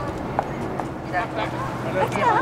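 Airport apron background noise: a steady low hum with a few scattered clicks and some short chirp-like sounds.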